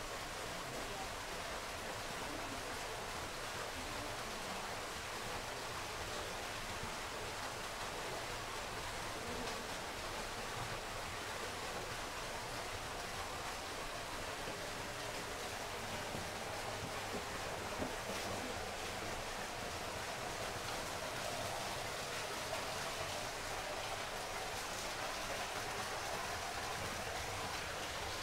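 Steady, even outdoor background hiss by a garden pond, with no distinct events.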